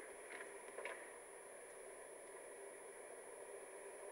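Near silence: steady hiss from an old VHS tape transfer with a faint, steady high whistle, and a couple of faint ticks in the first second.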